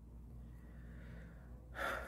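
A man's breath drawn in sharply near the end, over a faint low hum.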